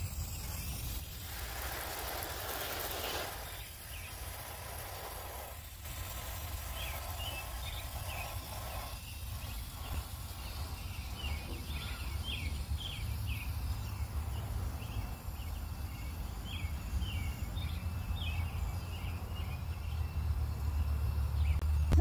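Garden hose spraying water over newly planted tomato seedlings and landscape fabric: a soft, steady hiss, a little stronger in the first few seconds. From several seconds in, a bird chirps in quick short notes.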